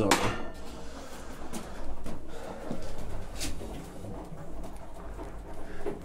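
A single sharp knock, then low, uneven scuffling and rustling noises.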